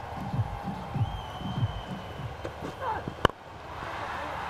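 Muffled, indistinct voices from the field over a steady ground hum. A single sharp click comes about three seconds in, and after it only a quieter steady hum remains.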